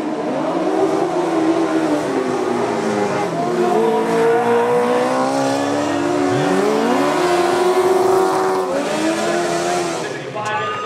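Several speedway sidecar outfits' engines racing together on a dirt track, loud and overlapping. Their pitches rise and fall again and again with the throttle as the machines accelerate and back off.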